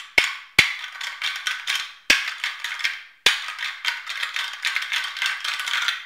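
Knight & Hale Pack Rack rattling call: two star-shaped toothed plastic discs meshed and ground together to imitate antler rattling. There are about four sharp cracks, each followed by a run of rapid clattering, and the last run, from about three seconds in, is the longest.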